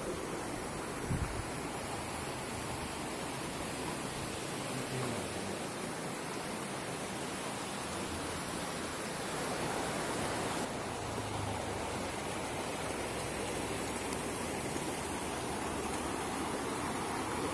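Steady rush of running water from a shallow rocky river and a natural hot spring welling up into a stone pool on its bank. A brief low thump about a second in.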